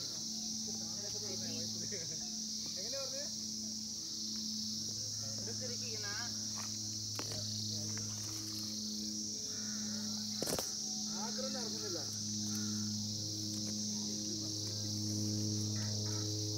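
Crickets chirping in a continuous high-pitched chorus. Beneath it runs a low hum that swells and fades about once a second, and there is a single sharp click about ten and a half seconds in.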